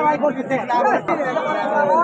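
Only speech: several people talking at once, loud chatter with no other distinct sound.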